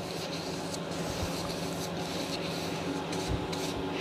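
A wide flat bristle brush stroking varnish across an acrylic painting, with a steady rubbing of bristles on the wet surface.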